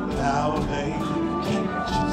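Live R&B band playing with a steady beat, keyboards and bass, with a man singing lead.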